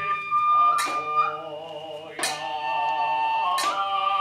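Kagura ensemble music: a transverse flute holds a steady high note while sharp strikes of drum and small hand cymbals ring out about four times. From about halfway, wavering chanted singing comes in, and the flute returns near the end.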